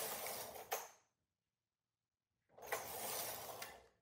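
Silver Reed knitting machine carriage pushed across the needle bed for two short-row passes, each a rasping slide of about a second and a half with one sharp click in it. The second pass starts about two and a half seconds in, after a silent pause.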